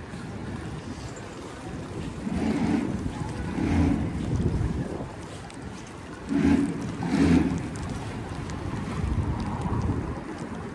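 Wind buffeting the microphone over a steady outdoor noise, with four short louder swells, two in the first half and two close together later.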